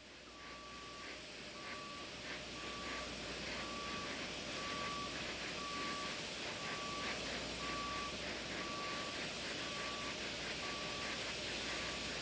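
A steady series of short electronic beeps at one pitch, about one every three-quarters of a second, over a wash of outdoor noise that grows louder over the first few seconds.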